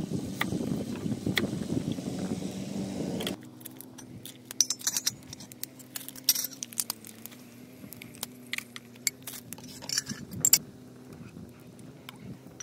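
A knife slicing shallots on a wooden chopping board, with wind rumbling on the microphone. About three seconds in this gives way to a steady low hum, with sharp metallic clinks of a metal ladle against an aluminium pot scattered through it.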